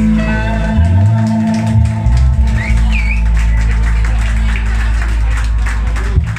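Live rock band of electric guitars and bass guitar playing the final bars of an instrumental, ending on a long held chord over a steady bass note that cuts off at the very end.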